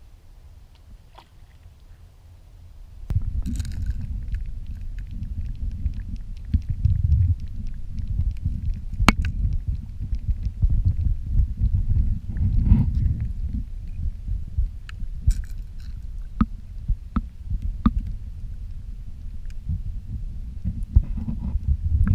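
Underwater sound heard through a submerged camera: a muffled low rumble of moving water, with scattered sharp clicks. It starts about three seconds in, after a quieter stretch.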